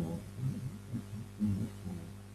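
A man humming softly to himself in short, wavering low phrases, over a steady electrical mains hum.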